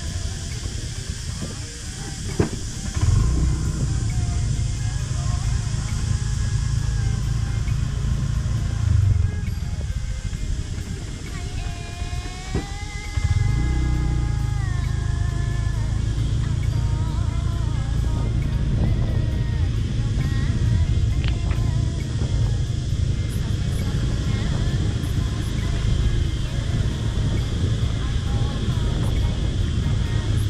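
A motorbike in motion, heard from a camera mounted on the bike: a steady low rumble of engine and wind on the microphone, which eases for a few seconds around the middle. Faint music and voices sound above it, with a held, stacked tone just before the rumble returns.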